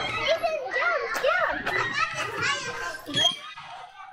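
Young children playing and calling out, with one child's high voice rising and falling in a sing-song way several times in the first half, over other children's chatter.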